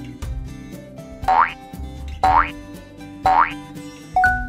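Background music with a steady beat, with three short rising cartoon sound effects about a second apart marking a quiz countdown.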